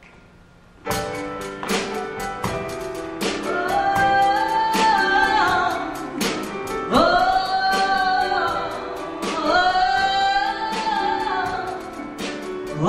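Live music starts with a sudden attack about a second in and runs on with evenly spaced percussive strikes; a few seconds later a woman's voice comes in singing into a microphone, holding long notes.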